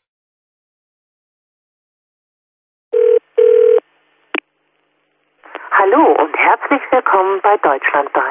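Two short steady telephone beeps about three seconds in, then a click as the line connects, followed by a voice heard through a telephone line.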